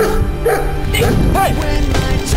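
A dog barking a few short times over background music.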